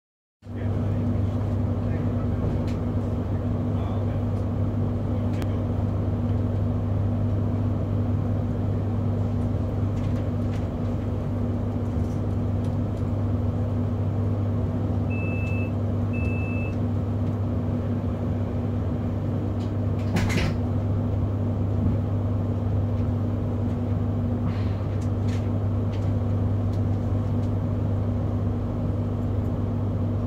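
Steady hum inside an electric commuter train carriage standing at a station platform. Two short high beeps sound about halfway through, and there is a brief click a few seconds later.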